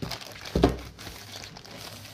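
Plastic courier mailer bag crinkling as it is handled, with a short bump about half a second in.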